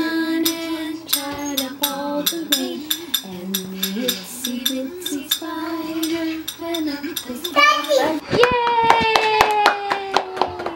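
A woman singing a tune in held notes while clapping her hands to the beat, with sharp claps coming several times a second. Near the end one long note slides slowly downward.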